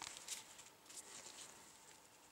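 Faint handling noise from gloved hands working an engine valve and its lapping stick: light scratches and rustles, with a couple of small clicks about a third of a second and about a second in.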